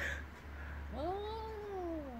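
A street cat's long, drawn-out yowl (caterwaul) that starts about a second in, rises and then slowly falls in pitch: the warning call of a territorial standoff between two cats.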